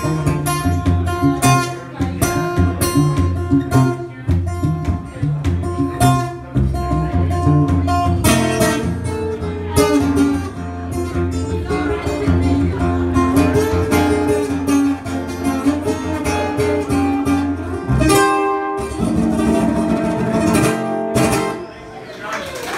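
Acoustic guitar played solo in an instrumental passage, with strummed chords over a steady run of bass notes and a brief break a little after halfway.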